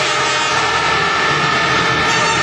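Speedway bikes' single-cylinder engines held at high revs at the start line before the tapes go up, a loud, steady multi-engine note.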